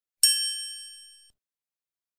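A single bright 'ding' chime sound effect for a logo reveal, struck once about a quarter second in and ringing out over about a second.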